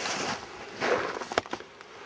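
Handling rustle as a handheld camera is picked up and carried, with scuffing steps on gravelly dirt. A sharp click comes about a second and a half in.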